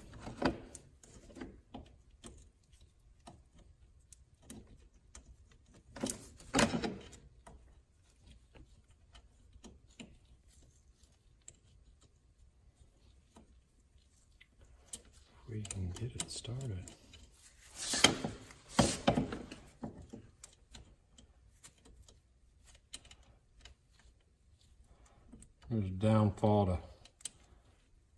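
Small metal parts clicking and clinking as a bolt is worked by hand into the front knuckle and brake caliper of an ATV, with two louder clatters about six and eighteen seconds in, the second the loudest. Brief muttering near the middle and the end.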